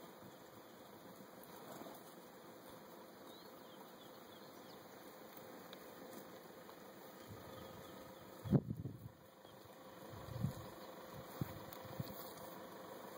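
Faint outdoor bush ambience with a steady hum of insects. Two brief low thumps break through, the louder about eight and a half seconds in and a smaller one about two seconds later.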